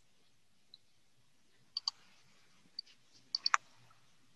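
Scattered sharp clicks at a computer: a pair about two seconds in, a single click, then a quick run of three near the end, the last the loudest.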